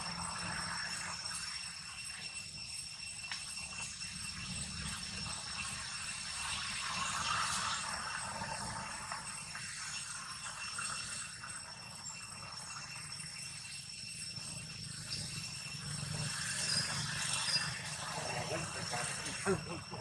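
Outdoor background: a steady, high-pitched insect drone over a low rumble, with faint distant voices.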